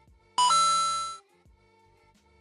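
A bright two-note chime sound effect, a short low note stepping up to a higher one that rings and fades out within about a second, marking the click on the subscribe button. Soft background music plays underneath.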